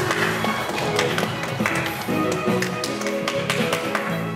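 Background music with held notes and a repeated sharp percussive beat.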